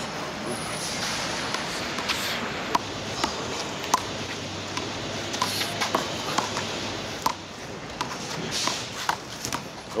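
Sharp slaps of a small rubber handball being struck by hand and smacking against the wall during a one-wall handball rally, a few seconds apart, over steady outdoor city background noise.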